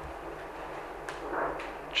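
Quiet room tone with a faint click about a second in and a faint murmur after it.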